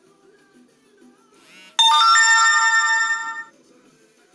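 Faint music playing from laptop speakers, cut across by a loud ringing chime. The chime is a quick rising sweep, then a sudden ringing chord of several steady tones lasting about a second and a half before it cuts off.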